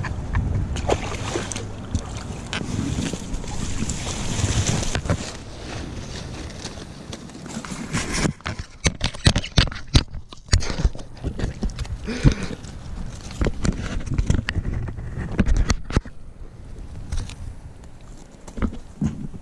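Water splashing and sloshing as a hooked trout is landed at the bank, with dry reeds rustling. From about halfway on, a quick string of sharp knocks and rustles comes from handling right against the microphone.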